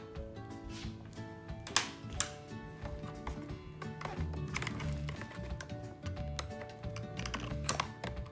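Background music over scattered sharp clicks and snips of scissors cutting a toy free of its cardboard packaging. The loudest clicks come about two seconds in and just before the end.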